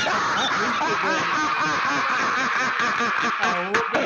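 A woman's voice making a rapid string of short, rising-and-falling laughing cries, over a steady hiss from a low-quality recording. The run breaks briefly near the end and then picks up again.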